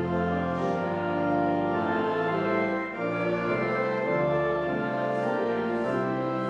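Pipe organ playing a hymn tune in full, sustained chords, moving from chord to chord about every second.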